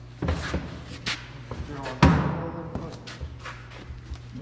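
Knocks and thuds of a plastic sheet being forced into a large tractor tire and the rubber being handled, several sharp knocks with the loudest thud about two seconds in.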